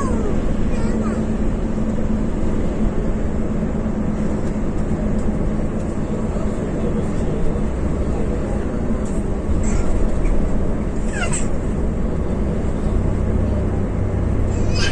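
Coach engine and road noise heard from inside the bus cab, a steady drone with a low engine hum. A few brief high gliding sounds cut through, the clearest a quick falling one about eleven seconds in.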